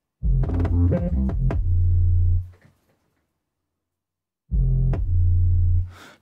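Hip-hop drum beat played back from the DAW: a kick drum over a deep 808 bass, the bass ducking each time the kick hits so the mix pumps, with sharper drum hits on top. It plays for about two seconds, stops, and starts again about four and a half seconds in.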